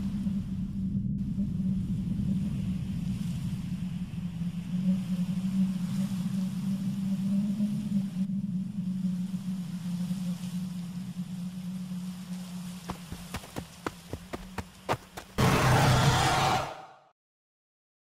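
Animated-film soundtrack: a steady low drone that slowly fades, then a run of sharp clicks and a loud rushing noise lasting about a second and a half, which cuts off suddenly into silence.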